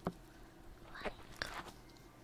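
Soft, close clicking and crackling at a binaural ear-shaped microphone, typical of ear-massage ASMR: a few separate clicks, the loudest right at the start and others about a second in.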